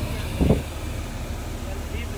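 Steady low rumble of a bus engine heard from inside the cabin, with a single dull thump about half a second in.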